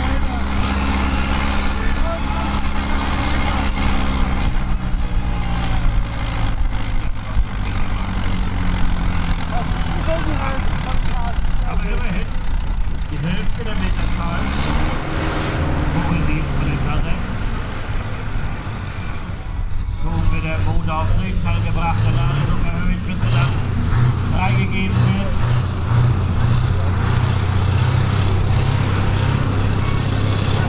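Large diesel tractor engine running. Its note is steady at first, rises and falls around the middle, and pulses unevenly in the second half.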